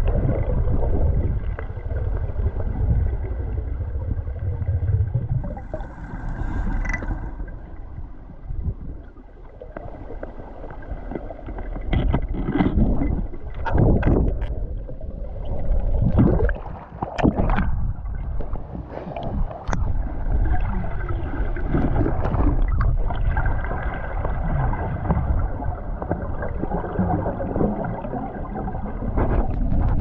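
Underwater sound picked up by a camera below the surface of the sea: a steady low rumble of moving water, with a cluster of bubbling and splashing surges in the middle as the camera nears the surface. A faint steady whine runs underneath.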